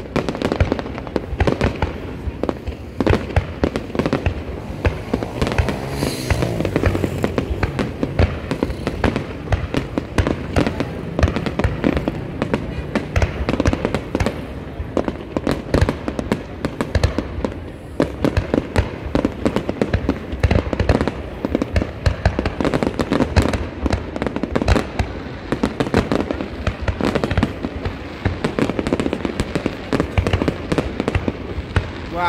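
Fireworks display: a continuous barrage of aerial shells bursting and crackling, many sharp bangs in quick succession with no let-up.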